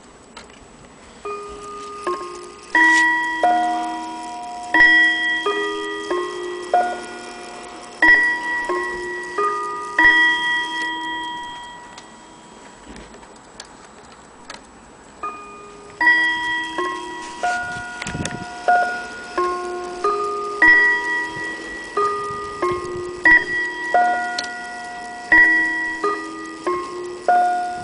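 Antique Elliott bracket clock's chime: brass hammers striking tuned gong rods in a sequence of ringing notes that fade between strikes. The chime plays twice, the second run starting after a pause in the middle.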